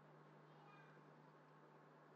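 Near silence: a faint, steady low hum under a faint hiss, the recording's background noise between narration.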